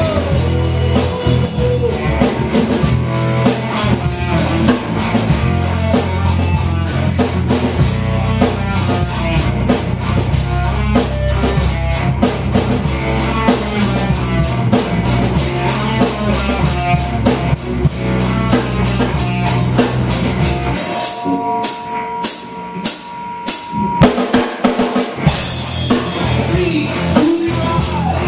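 Amateur rock band playing live: drum kit and electric guitar over a heavy low bass line. About 21 seconds in, the low end drops out for a short break of separate drum hits and guitar. The full band comes back in just before the end.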